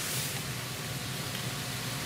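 Steady hiss with a low hum, the background noise of a courtroom microphone feed with no one speaking.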